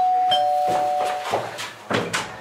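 Doorbell chime ringing a two-note ding-dong, a higher note followed by a lower one, both ringing on and slowly fading for over a second. A couple of soft thumps follow near the end.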